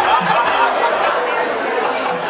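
Several people talking over one another in a large hall, with a low beat of background music underneath that fades out near the end.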